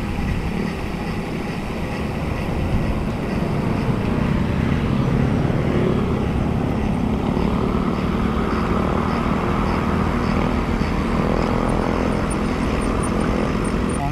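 Wind rushing over the microphone of a rider on a road bike at speed: a loud, steady low rumble. About halfway through, a motor vehicle's engine hum rises over it.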